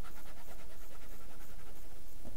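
Pen scribbling on paper in rapid, even back-and-forth shading strokes, stopping near the end.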